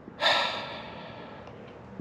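A long breathy exhale, a sigh, that starts sharply and fades away over nearly two seconds.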